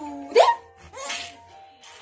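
Baby laughing in gasping, hiccup-like bursts: a loud, sharply rising squeal about half a second in, then a shorter, breathier laugh about a second in.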